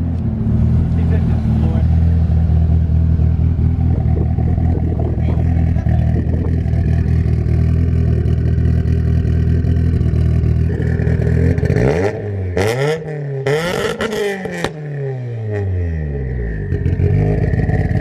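Mitsubishi Lancer Evolution's turbocharged four-cylinder engine idling steadily with exhaust smoking, then revved twice about twelve seconds in, its pitch rising and falling, with loud bursts at the peaks.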